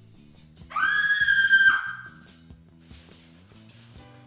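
A single high-pitched scream of about a second, starting near the first second, over background music with a steady low bass line.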